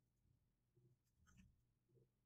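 Near silence with faint, irregular keyboard keystrokes and a single sharper mouse click about one and a half seconds in.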